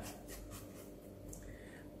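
A few faint scratchy strokes of toothbrush bristles scrubbing a 3M 9501V disposable respirator mask.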